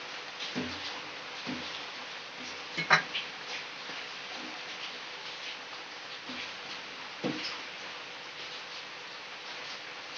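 Steel spoon stirring milk in a stainless-steel pot, with a few light clinks of the spoon against the pot, the sharpest about three seconds in, over a steady hiss.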